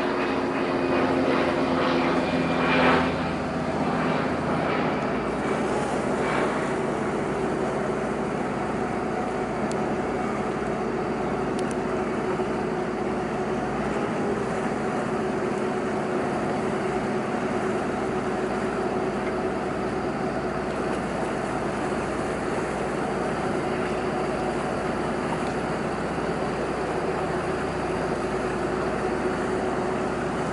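Diesel engine of the fishing vessel Fierce Allegiance running as the boat pulls out under way, a steady low drone with a few stronger tones that fade about three seconds in.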